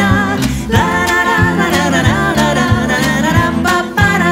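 Women's vocal trio singing in close harmony over a steady drum beat, a short break in the voices just before the first second.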